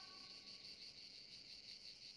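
Faint, steady chirring of crickets; otherwise near silence.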